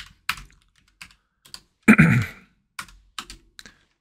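Typing on a computer keyboard: a string of separate key clicks as a short sum is entered. There is one brief, louder sound about halfway through.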